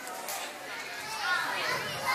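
Indistinct chatter of many young children talking at once in a gym, a little louder after the first second.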